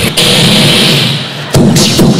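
Large theatre audience laughing loudly. Near the end a man's voice cuts in sharply.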